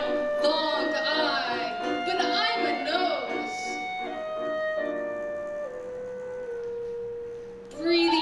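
Live contemporary chamber ensemble music: busy repeated figures in the first half, then a sustained note that steps down in pitch several times and fades out near the end.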